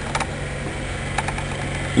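A steady low mechanical hum in the background, with a few light clicks of a screwdriver working the breaker-plate screw on a dismantled Yamaha TY 125 magneto.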